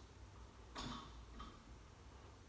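Near silence: room tone in a pause between spoken lines, with one faint short sound a little under a second in.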